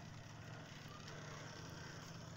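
Faint, steady low engine hum over outdoor background noise.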